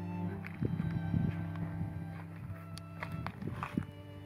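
Irregular footsteps and knocks on loose stony ground, from about half a second in until near the end, over slow violin and cello background music.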